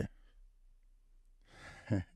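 A man's breath drawn in sharply near the end of a short pause in his speech, after a second or so of near quiet; his voice resumes at the very end.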